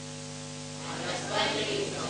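Steady electrical hum and hiss, with faint voices coming in about a second in.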